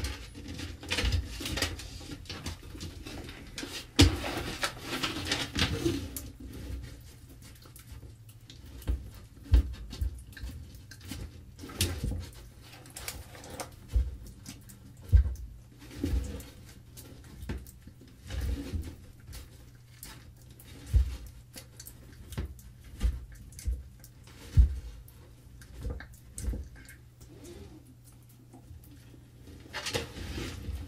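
Irregular knocks and crunches as a large green iguana bites and chews carrot pieces on a wooden shelf, his jaws bumping the board; his mouth is deformed by metabolic bone disease, so he struggles with the last pieces. A low steady hum sits underneath.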